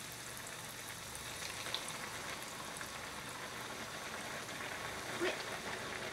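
A large breaded chicken breast cutlet deep-frying in about 2 cm of hot oil in an iron frying pan. The oil sizzles steadily with fine crackles, building slightly as it bubbles hard around the freshly added cutlet.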